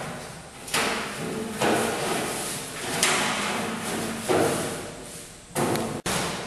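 Metal enclosure bars clanking and rattling: about five sharp metallic bangs a second or so apart, each ringing on in a large, echoing room.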